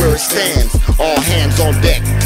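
Hip hop music: a rapper's voice over a beat with a deep bass line, the bass holding steady through the second half.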